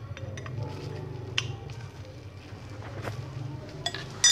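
Small metal clinks and clicks of a flat steel spray-gun spanner against the gun's fluid nozzle as it is turned clockwise to tighten the nozzle: a few separate sharp clicks, the loudest about a second and a half in, over a steady low hum.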